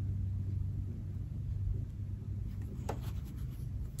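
Soft rustling and brushing of a stack of pinked-edge cotton fabric squares as they are peeled apart by hand, with a few light scuffs about three seconds in, over a steady low hum.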